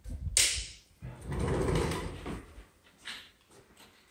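A sliding cavity door being moved along its track: a short hiss, then a rushing scrape of about a second and a half.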